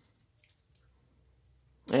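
Near silence, with two faint small clicks about half a second and three-quarters of a second in, from fingers handling a small polished stone cabochon. A man's voice begins right at the end.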